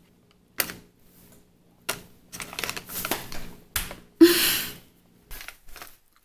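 Close-up eating of a protein bar: irregular crisp clicks and crunches, with one short breathy burst about four seconds in.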